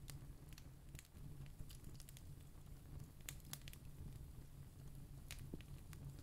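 Near silence: faint room tone with a steady low hum and a few scattered faint clicks.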